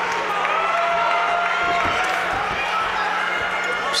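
Arena crowd noise with long, drawn-out shouts from spectators or cornermen during an amateur MMA bout, over a steady low hum and a few faint thumps.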